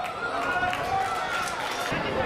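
Voices calling out and shouting at a football match, heard through the stadium's open-air ambience.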